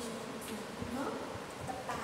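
A woman's voice in short stretches, talking or murmuring over a steady room hiss.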